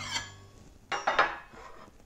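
A metal knife clinking and scraping against a white plate while a cake slice is served, in a few short clatters.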